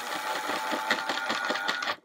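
Small electric motor of an OO gauge Oxford Rail N7 (GER K85) 0-6-2 tank locomotive chassis running with a buzz and a rapid, irregular crackle of clicks while a screwdriver shorts its terminal to the armature. It runs only while shorted this way, which the owner takes for a dud motor. The sound stops abruptly at the end.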